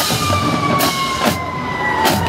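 Marching band drumline hitting a few sharp accents under a long, high tone that slides slowly down in pitch, like a siren winding down.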